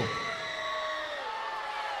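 Arena crowd reacting between lines of a wrestler's promo: a steady wash of many voices, with a few single voices held out above it.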